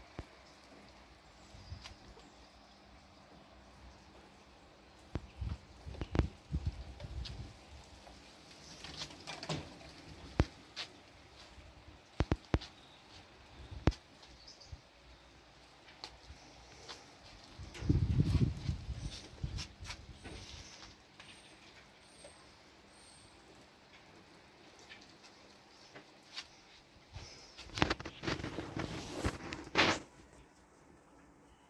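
Handling and movement noise close to a phone microphone: scattered clicks, knocks and rustles, with a heavier low thump about eighteen seconds in and a burst of rustling near the end.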